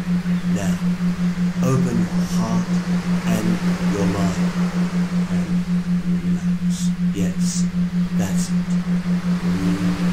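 A low electronic tone pulsing evenly about five times a second, a rhythmic beat laid under a hypnosis recording, with faint murmured voice fragments and a light hiss over it.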